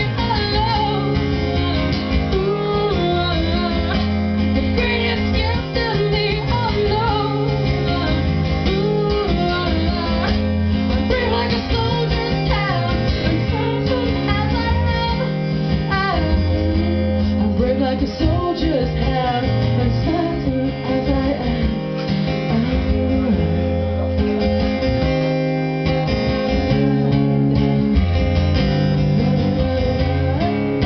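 Solo acoustic guitar strummed steadily, with a woman singing over it in a live performance.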